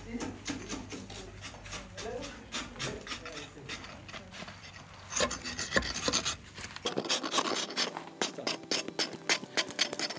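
Hand chisel scraping and chipping at a block of ice in a run of short, rasping strokes, which come quicker and sharper in the second half.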